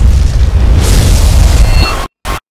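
A loud trailer boom hits suddenly and rumbles on deeply under music, with a rushing hiss joining about a second in.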